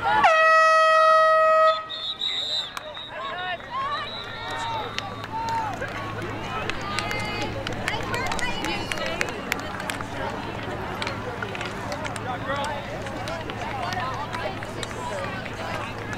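One steady air-horn blast of about a second and a half, stopping play on the lacrosse field, followed by the chatter of players and onlookers.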